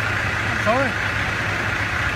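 Commercial truck's engine idling steadily, with a brief voice sound a little under a second in.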